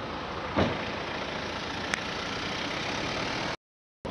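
City street traffic noise, a steady hum with two brief knocks, the first about half a second in and the second near two seconds. The sound cuts off abruptly shortly before the end.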